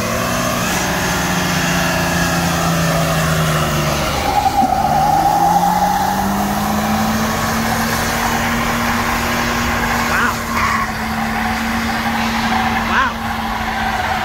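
Dodge Dakota pickup doing a burnout: the engine is held at high revs while the rear tyre spins and squeals on the pavement, throwing up heavy smoke. The engine pitch dips early on, then climbs and holds at a steady high rev through the second half.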